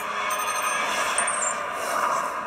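Sound from the TV episode: a steady electronic hum and hiss, with a few faint high tones in the first second, under a ship's computer-interface screen.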